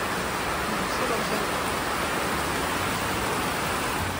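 Heavy rain falling steadily on flooded paved ground, an even unbroken hiss.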